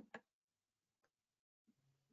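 Near silence, with two faint short clicks right at the start and a fainter tick about a second in.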